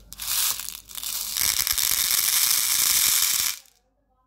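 Small silver balls poured from one plastic bowl into another, a dense pattering stream of many balls hitting the plastic and each other. A brief spill first, then a steady pour for about two and a half seconds that stops abruptly just before the end.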